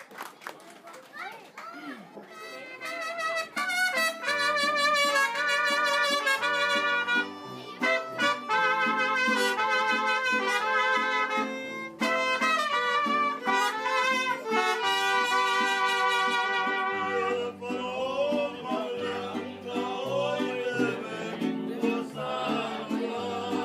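Mariachi band of trumpets, violin, vihuela and guitarrón starting a song about three seconds in, with a loud trumpet-led introduction over the guitarrón's bass line. In the last few seconds the trumpets drop out, leaving the violin and strummed strings.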